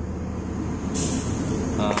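Hands working the end of a microphone cable: a short, scratchy scrape about a second in, over a steady low hum.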